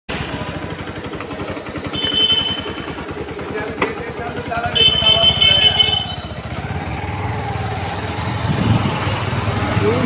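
Motorcycle engine running at low road speed with a steady rapid firing pulse. Two short horn beeps sound, about two seconds in and again around five seconds in.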